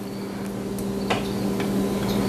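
A steady low hum with faint background noise, and a soft click about a second in.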